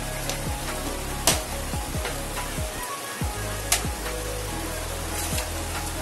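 Spices and gravy sizzling steadily in hot oil in a kadai, under background music. Two sharp clicks stand out, one just over a second in and one near four seconds.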